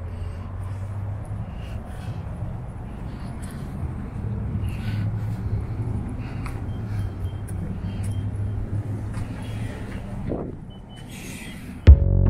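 Outdoor street background: a steady low rumble, with scattered faint ticks and a short rising sound and hiss near the end.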